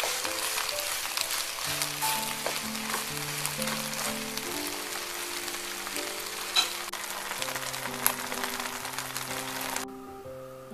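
A kimchi pancake sizzling as it fries in oil in a pan, now nicely cooked, with a few sharp pops. A gentle melody plays underneath, and the sizzle cuts off suddenly near the end.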